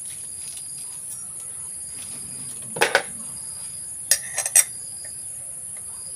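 Metal parts of a brush cutter's cutting head clinking as the steel blade and its fittings are handled and seated by hand: two sharp clicks about three seconds in, then a quick cluster of three or four clicks a second later.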